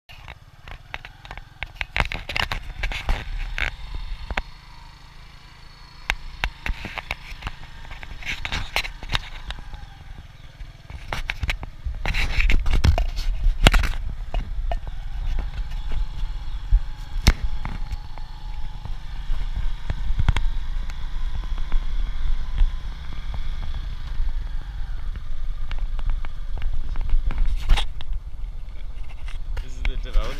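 Boda-boda motorcycle riding over a rough dirt road, recorded on the bike: a steady low rumble of engine, wind and road noise with frequent sharp knocks and rattles as the bike jolts over bumps. It is quieter for a couple of seconds near the start and grows louder after about twelve seconds.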